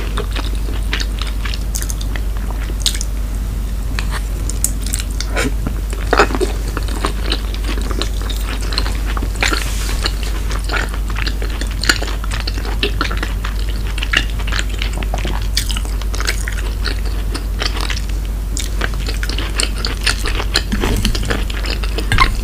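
Close-miked chewing of cheesy shrimp gratin with broccoli: many small wet mouth clicks and smacks, over a steady low hum.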